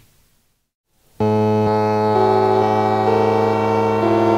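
The end of one song fading out, a second of silence, then about a second in a sustained keyboard synthesizer line begins: held notes over a steady low drone, the upper notes moving in slow steps, opening an instrumental black metal track.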